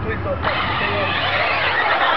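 Large RC car's engine revving hard as the car accelerates toward the jump, coming in suddenly about half a second in, over a low steady hum.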